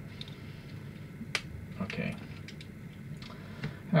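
Scattered light plastic clicks and taps from a small 1/48-scale plastic mecha figure being handled and its parts shifted in the fingers. There is one sharper click about a third of the way in, then a few fainter ticks.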